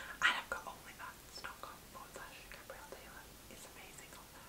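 A woman whispering faintly in short breathy bursts, without any voiced speech.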